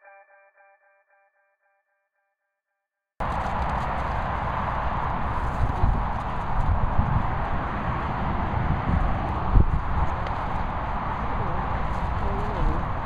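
A guitar music track fading out, a couple of seconds of dead silence, then outdoor camera audio cutting in abruptly: a steady rushing noise with a low, buffeting rumble, typical of wind on the microphone, and a few soft thumps.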